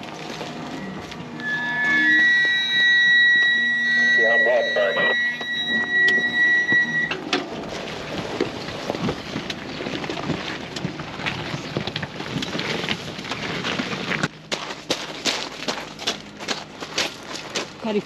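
Caravan brakes squealing in one steady high-pitched squeal of about five seconds, starting a second or two in, while the caravan is towed down a rocky track with its brakes being ridden. Then comes rough crunching and knocking of wheels over rocks and gravel.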